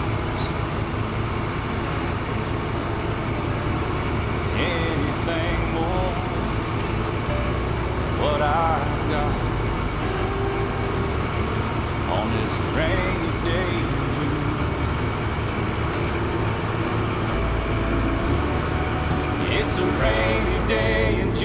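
Steady low rumble of a small cargo coaster's engine as the ship sails past, with a few brief snatches of voices.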